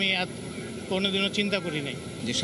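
A man speaking, with a short pause about half a second in, over a steady engine hum in the background.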